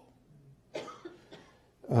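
A short cough about three quarters of a second in, during a pause in a lecture.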